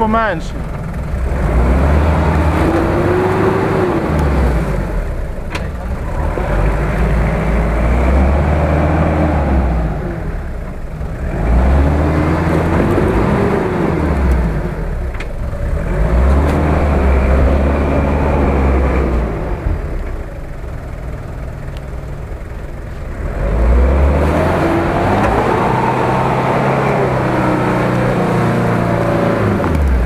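Toyota Land Cruiser 70-series engine revving up and falling back several times as the off-roader crawls and climbs out of a muddy rut, with a heavy low rumble between the revs.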